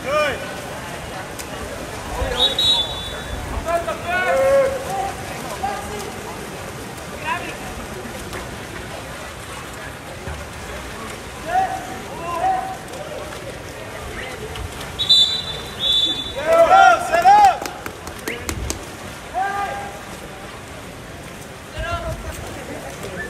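Shouts from coaches and spectators around a water polo game, too distant to make out as words, over the constant wash of the pool. Short high whistle blasts, typical of a water polo referee, come about two seconds in and twice in quick succession about two-thirds of the way through.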